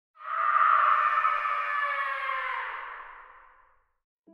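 An intro sound effect: a dense, many-toned hit that starts sharply and slowly dies away over about three and a half seconds.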